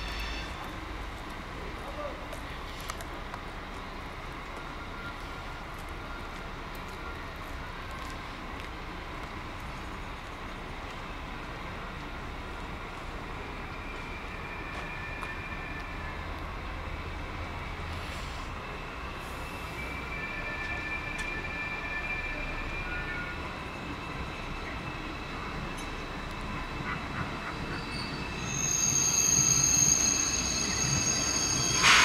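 ICE 4 high-speed train approaching and pulling into the station, braking. Faint intermittent high squeals come first, then loud, shrill brake and wheel squealing over the last second or two as it draws alongside.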